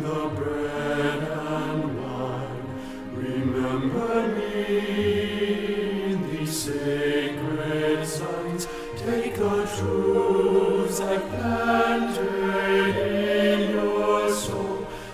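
Low male bass voice singing a choral bass line in Korean with piano accompaniment, the bass part brought forward as in a part-practice track.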